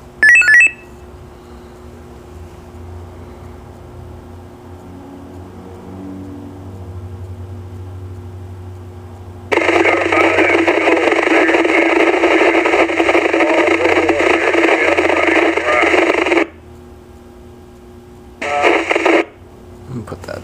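Maxon SM-4150 VHF mobile radio tuned to MURS channel 4. A short electronic beep comes just after the start. Later its speaker opens with received audio: a steady, narrow-band rush that switches on sharply, runs for about seven seconds and cuts off, followed near the end by a shorter burst of the same sound.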